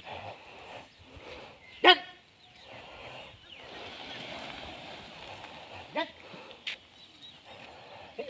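Short shouted commands from an elephant's handler (mahout): one loud, brief call about two seconds in and a fainter one near six seconds, over a faint steady outdoor background.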